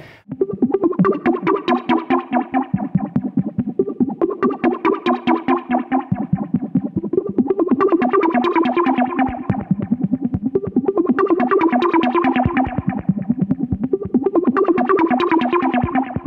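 Korg minilogue analog synthesizer playing a fast repeating sequence of short plucked notes through a Chase Bliss Thermae analog delay, whose echoes add extra syncopated notes to the pattern. The tone brightens and dulls in waves about every three and a half seconds.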